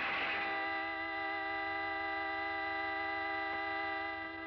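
A long, steady chord of several held tones, unchanging throughout, after a noisy wash fades out within the first half second.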